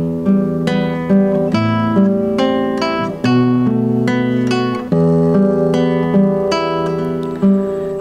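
Nylon-string classical guitar played solo in an instrumental introduction to a song: picked chord notes, about three a second, ringing over bass notes that change every second or two.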